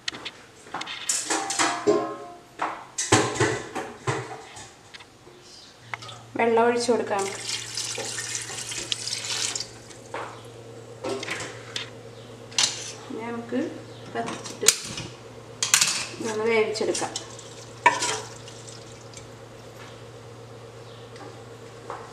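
Kitchen work at an aluminium pressure cooker: water poured in over beef pieces and a wooden spoon knocking against the pot, with scattered clinks. A steady low hum begins about six seconds in.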